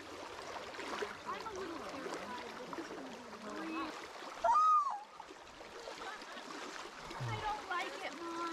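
Steady rush of a shallow creek flowing over rocks, with faint voices and a short, louder exclaimed call about halfway through.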